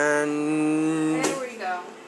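A person's voice holding one long hummed or sung note that steps slightly up in pitch, cut off about a second and a half in by a sharp knock as the elevator's sliding doors shut, followed by a brief vocal sound.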